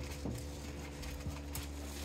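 A quiet lull: a few faint small knocks and scuffs over a low steady hum.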